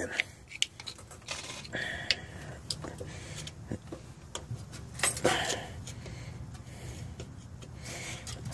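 Scattered light clicks and short rubbing noises from handling hand tools and parts under the vehicle, over a faint steady low hum.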